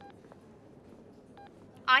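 Two short electronic beeps from a smartphone, about a second and a half apart. Near the end a woman's recorded voice begins playing from the phone's voice message.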